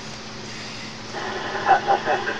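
CB radio receiver hiss with a faint steady hum, then about a second in a laugh comes through the radio's speaker, thin and tinny. The hiss is the heavy noise on the frequency during poor propagation.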